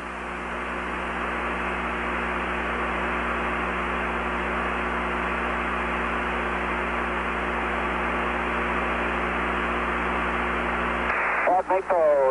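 Steady hiss with a low hum from an open, narrow-band radio voice channel, keyed but with nobody talking. It swells in over the first second and cuts off shortly before a voice comes in near the end.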